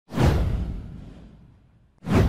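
A single whoosh sound effect for an animated logo transition: it hits sharply with a deep low end and fades away over about two seconds.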